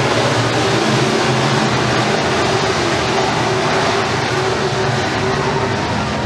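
Engines of a pack of RUSH Pro Mod dirt-track race cars running together at speed through the turns: a loud, steady drone of several overlapping engine notes.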